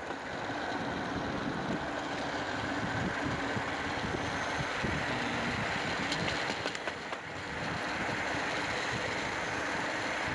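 Steady rolling rumble of a hand-pushed rail trolley's steel wheels running along the railway track.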